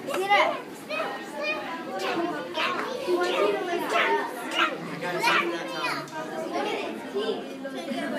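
Children's voices and indistinct chatter, several high voices overlapping with no clear words.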